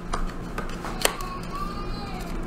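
Plastic packaging of an eyeshadow palette being handled and pulled open, with rustling and one sharp click about a second in.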